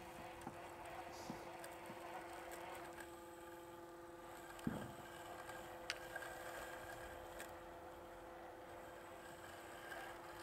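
Sveaverken Blix robotic lawn mower running faintly with a steady hum as it drives and cuts across grass, with a few faint clicks near the middle.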